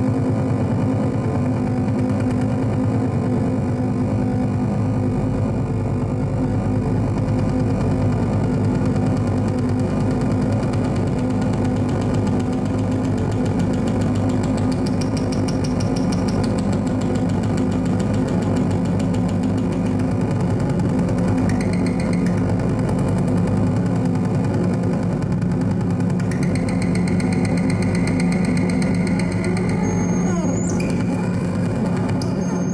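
Live noise-drone improvisation on modular synthesizer and amplifier feedback: a dense, steady low drone that sounds like a rumbling engine. Thin high tones come in briefly around the middle, and a steady high whistle joins a few seconds before the end.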